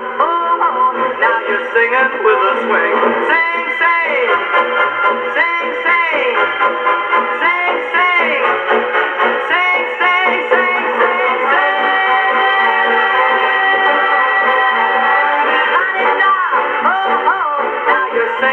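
A 78 rpm record of swing music playing through an HMV Style 6 acoustic horn gramophone, with the thin sound of horn playback: no deep bass and no high treble. Long held notes come in the middle stretch.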